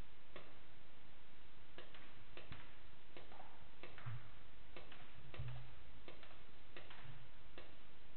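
Scattered sharp clicks and taps at an irregular pace, about fifteen in all, with a few short low hums in between.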